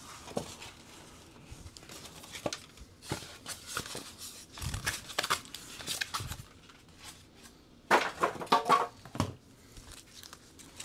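Cardboard packing and plastic wrap being handled and pulled out of a new 3D printer's frame: scattered rustles, crinkles and light scrapes, with a louder burst of crinkling about eight seconds in.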